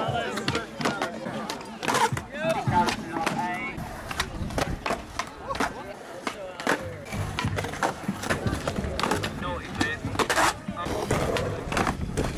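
Skateboard wheels rolling on concrete, with many sharp clacks of the board popping and landing during flatground tricks.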